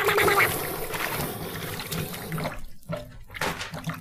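Water sound effect: a rush of water that fades over the first two and a half seconds, followed by scattered small splashes and drips.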